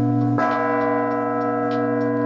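Large bronze church bells ringing in the tower belfry. A new strike comes about half a second in, its tones layering over the long, steady hum of earlier strokes.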